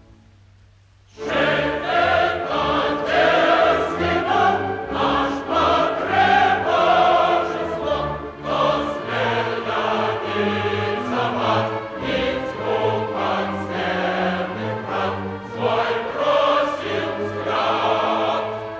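Opera chorus singing full-voiced with orchestra. It enters loudly about a second in, after a brief pause.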